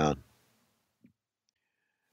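The last syllable of a man's spoken word trailing off, then near silence with a single faint click about a second in.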